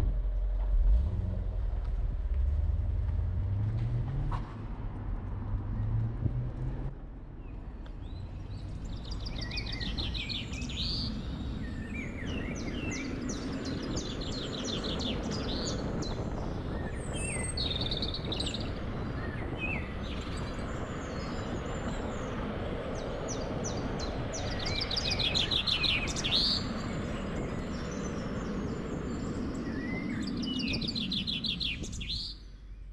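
Small birds chirping and trilling again and again from about nine seconds in, over a steady outdoor rumble. During the first seven seconds a low hum rises in pitch and then falls away.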